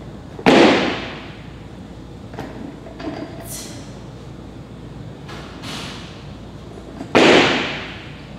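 Two loud impacts about seven seconds apart as a loaded barbell is jerked overhead: the lifter's feet stamp onto the lifting platform in the catch and the loaded bar jolts. A few softer knocks come between them as the bar is brought back down to the shoulders.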